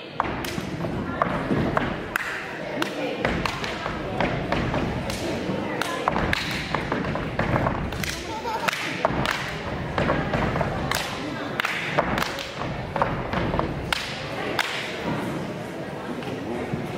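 Step team body percussion: feet stomping on a stage floor and hands clapping in unison, at an uneven rhythm of one or two sharp hits a second.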